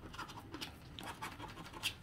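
A plastic scratcher scraping the coating off a scratch-off lottery ticket in a quick series of short, faint strokes.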